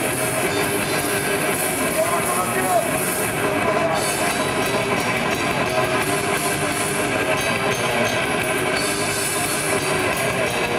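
Grindcore band playing live through a PA: distorted electric guitars, bass and fast drumming, with harsh shouted vocals over it.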